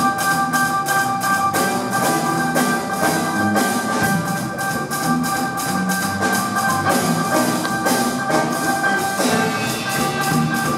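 Big band playing, saxophone section and piano in front, with long held chords over a steady beat.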